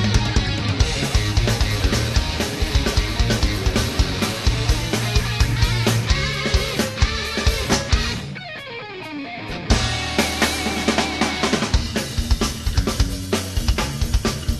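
Live hard rock band playing with no singing: electric guitars, bass and a drum kit. A little past halfway the drums and bass stop for under two seconds, leaving a falling line, then the full band comes back in together.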